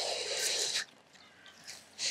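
Grass stems rustling as a hand presses them down, a short dry swish that stops a little under a second in.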